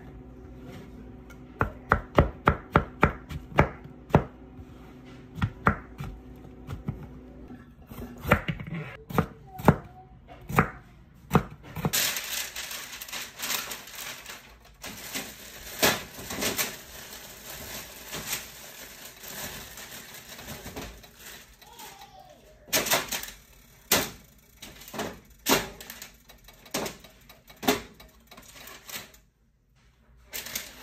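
Chef's knife slicing mushrooms on a plastic cutting board, quick strikes at about four a second, then slower, scattered cuts. From about twelve seconds in, a steady rustle with scattered clicks and knocks takes over.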